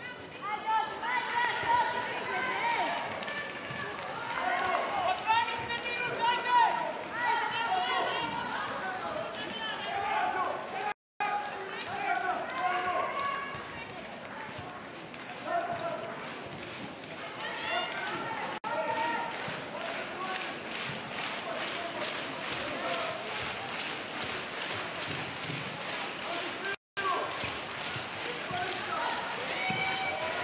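Handball arena sound: a voice talking over crowd noise, with a handball bouncing on the court. In the second half a fast, even run of sharp beats sets in. The sound cuts out briefly twice.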